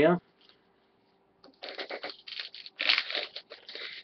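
Crinkly wrapper of a baseball card pack being torn open and handled: an irregular rustling crackle that starts about a second and a half in.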